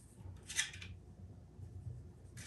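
Faint rustling of stretch velvet fabric being handled and pulled over a crown frame, with one brief scuff about half a second in, over a low steady hum.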